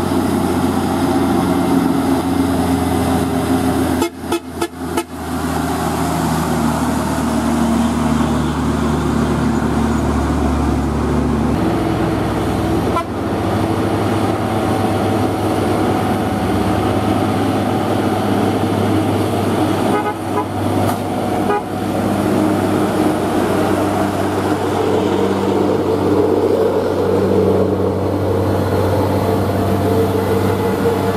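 Loaded heavy diesel trucks climbing a hill slowly in low gear, engines running steadily under heavy load, with a truck horn sounding. The engine note shifts abruptly about a third of the way through as another truck takes over.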